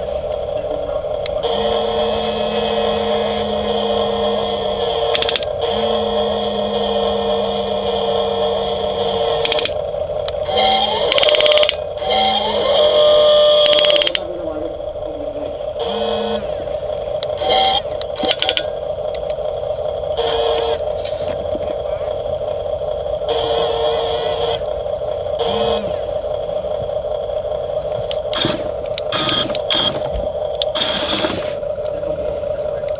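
Small electric motors of a toy remote-controlled excavator whirring as the boom, arm and bucket are driven. One steady whine runs throughout, while a lower tone starts and stops every few seconds as different functions are switched on and off. Pitch slides during a louder stretch about halfway through.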